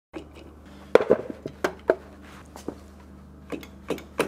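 Irregular sharp clicks and knocks, some with a brief ring, as a bungee cord's metal hooks are handled and fitted onto the handle of a plastic impulse heat sealer. They begin about a second in, over a low steady hum.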